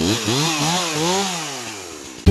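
Chainsaw's small two-stroke engine running just after starting, revved up and down about three times with its pitch rising and falling, then easing back and dropping in pitch toward the end.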